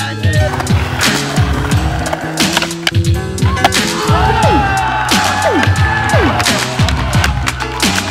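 Skateboard wheels rolling and the board knocking against a concrete skatepark, under a music track.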